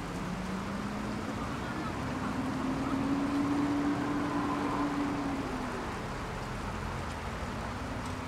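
Steady city traffic rumble. One vehicle's engine tone rises and grows louder over the first three seconds, holds, then fades away about five or six seconds in.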